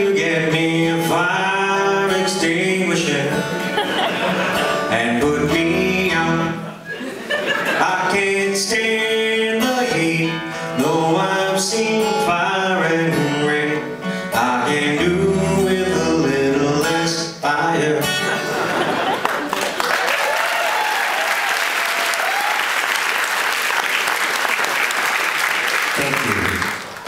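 A man singing a short song, accompanying himself on acoustic guitar. About eighteen seconds in the song ends and an audience applauds for the rest of the time.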